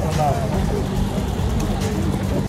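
A woman's short hummed 'mm' just after the start, then steady outdoor background noise.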